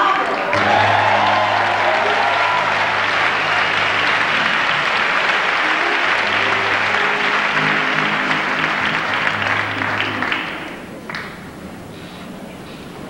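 Audience applauding, fading away near the end, with low held notes from an instrument playing underneath.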